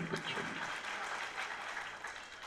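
Audience applauding, fairly faint, dying away toward the end.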